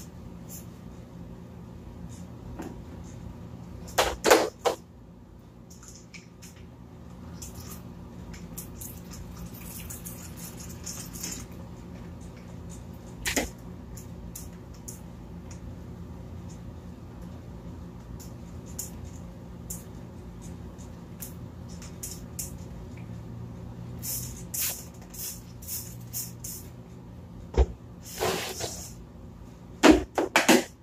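Plastic knocks and clatter from handling a plastic tub enclosure, its lid and a small water dish: a few sharp knocks about four seconds in and again near the end as the lid goes back on, with scattered taps between. Short hissing bursts of a hand spray bottle misting, mostly in the second half, over a steady low hum.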